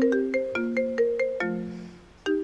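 iPhone ringing with an incoming call: a quick ringtone melody of marimba-like notes that starts suddenly and ends its phrase on a lower held note about one and a half seconds in.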